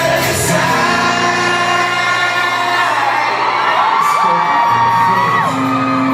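Live pop concert music heard from the audience: a singer holding long notes with a few slides in pitch over the band's backing, with whoops from the crowd.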